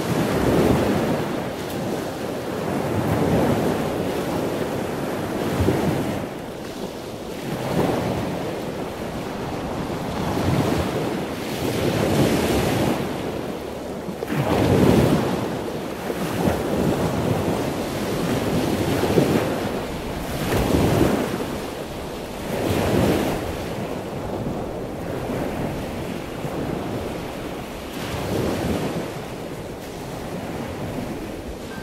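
Sea waves washing ashore in surges about every two seconds, with wind.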